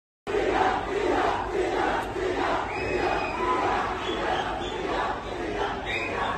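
A crowd of many voices shouting together, starting abruptly just after the opening.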